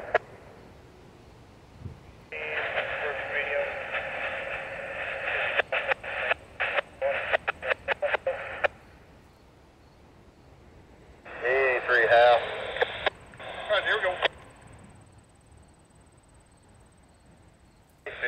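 Railroad radio traffic on a scanner: a static-filled transmission that breaks up and cuts in and out for several seconds, then a few seconds of a voice over the radio, with quiet between.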